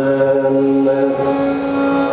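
Male Carnatic vocalist holding one long, steady note over a drone, with no percussion.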